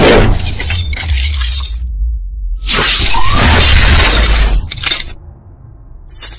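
Intro sound design: two long crashing, shattering hits over a deep bass rumble, dropping away to a quieter tail near the end.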